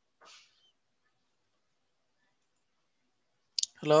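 Near silence with a faint breath-like rustle just after the start, then a short sharp click shortly before a man's voice says "Hello" at the very end.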